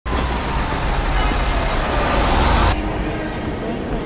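City street traffic noise with a bus running, a heavy low rumble under it. It cuts off abruptly about two and a half seconds in, leaving a much quieter background.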